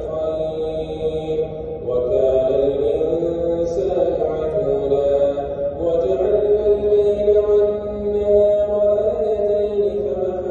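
A single male voice chanting in Arabic in a melodic religious style, holding long notes that rise and fall, with a short pause about two seconds in.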